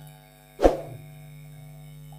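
A single short thump a little past half a second in, a hand knocking against a clip-on lapel microphone, over a steady low electrical hum.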